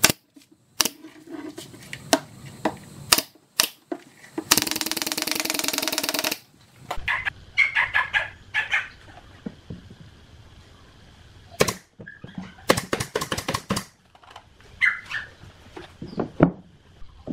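Pneumatic brad nailer firing brads into plywood: sharp single shots near the start, then a quick run of several shots past the middle. About four seconds in, a loud buzzing sound lasts nearly two seconds.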